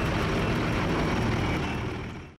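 Diesel engine of a tracked rice combine harvester running steadily, fading out near the end.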